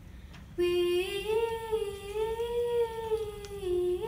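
Sixth-grade children's choir singing a slow, sustained unison line a cappella. The pitch rises gently about a second in and settles back down near the end.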